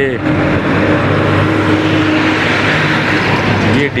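Engine of a heavy painted goods truck running close by as the truck rolls slowly alongside: a steady, loud mechanical drone with a low hum.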